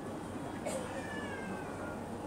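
A faint, drawn-out call that slowly falls in pitch, starting just over half a second in and lasting about a second and a half, in a lull between phrases of amplified speech.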